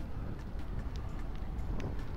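Outdoor background noise: a steady low rumble with a few faint, scattered ticks.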